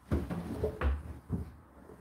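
Clothes being pushed by hand into a front-loading washing machine drum: fabric rustling with about three dull bumps as the load is pressed in.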